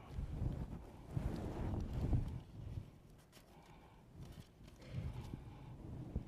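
Low thumps and rustles of handling close to the pulpit microphone, loudest in the first two seconds and again about five seconds in, with a few faint clicks between.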